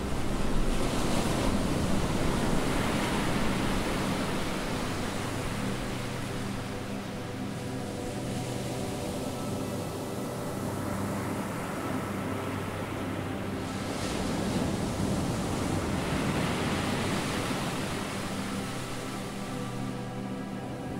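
Ocean surf rushing in swells, loudest near the start and again about three-quarters of the way through, over background music with long held tones.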